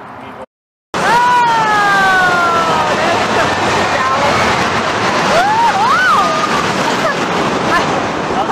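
Loud rushing noise of a roller coaster ride, wind and track, running steadily after a short silent gap. A long falling scream comes soon after it starts, and a voice cries out with a rising-and-falling 'whoa' about two thirds of the way through.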